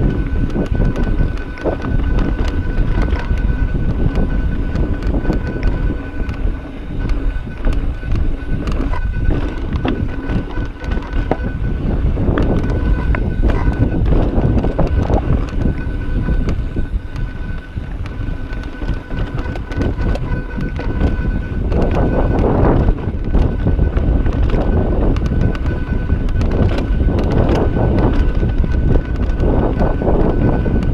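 Mountain bike rolling over rocky dirt singletrack: tyres rumbling and the bike rattling and knocking over rocks, with wind buffeting a chest-mounted action camera's microphone. A thin steady whine sits above the noise.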